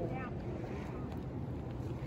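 Wind buffeting the microphone outdoors: a steady low rumble, with a brief high pitched chirp right at the start.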